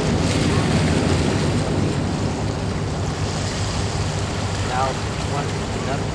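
Distant engine noise of a Blue Angels formation of F/A-18 Hornet jets, a steady low rumble that eases slightly as the formation moves off, with wind buffeting the microphone. Faint voices near the end.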